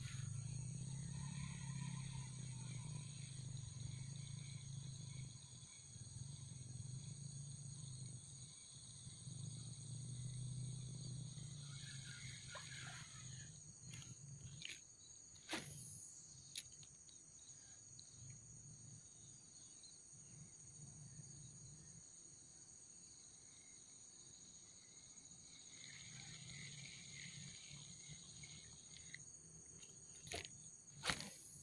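A steady, high-pitched insect chorus runs throughout. A low hum is heard over the first dozen seconds or so, and a few sharp clicks come about halfway through.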